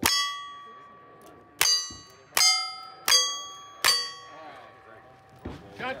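Five single-action revolver shots, each answered by a steel target plate ringing on. The first comes at the start, then a pause of about a second and a half, then four more roughly three-quarters of a second apart.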